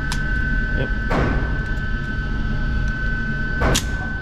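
Gunshots ring out in an indoor shooting range: one smeared, reverberant report about a second in and a sharper, louder one near the end, over a steady hum. A short click comes right at the start.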